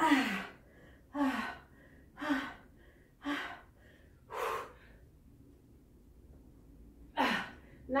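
A woman breathing hard with exertion, pushing out sharp, partly voiced exhales about once a second, five in a row. Then comes a pause of over two seconds and one more exhale near the end. She is working hard enough to feel lightheaded.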